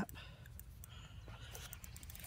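Faint, irregular small clicks from a fishing reel being tightened up, mixed with light handling noise.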